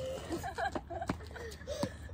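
Girls' voices and chuckling, with two sharp knocks, one about a second in and one near the end: a lacrosse ball being thrown and caught in the sticks' mesh heads.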